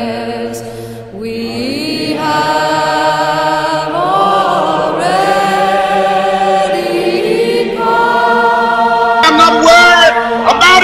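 A choir singing slow, long-held chords, the harmony shifting every few seconds.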